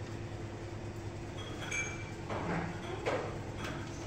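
Steady low background hum in a lift lobby, with a faint brief high ping about a second and a half in.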